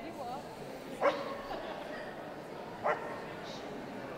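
A dog barking twice, two short, sharp barks about two seconds apart, over steady background chatter.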